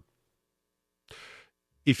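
About a second of dead silence, then a short, faint in-breath, and speech starting again near the end.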